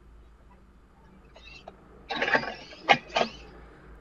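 FTC competition robot's motors and servos whirring in short spurts as it grabs a cone, retracts its linear slides and swings the intake arm back to hand the cone to the outtake, starting a little over a second in, with a sharp click just before three seconds.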